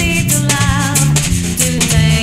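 Live small jazz band playing: electric bass notes with a drum kit keeping time in steady cymbal or shaker ticks, under a melody line that wavers in pitch.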